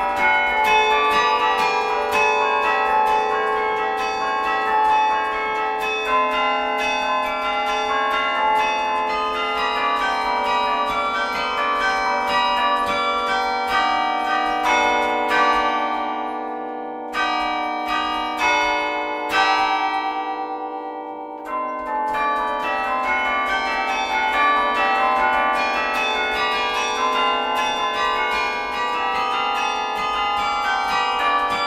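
Carillon bells played by hand from the baton keyboard: a quick run of struck bell notes, each ringing on over the next. About halfway through, the playing thins to a few sparse strikes that ring out and fade, then the full stream of notes resumes.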